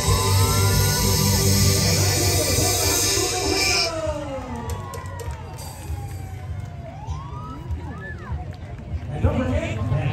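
Loud music with a heavy bass beat, cutting off about four seconds in. Then a siren winds slowly down in pitch and rises again near the end.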